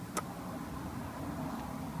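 A small rocker switch clicks on just after the start, followed by a steady low electrical hum as the electrolysis cell's power supply comes under load.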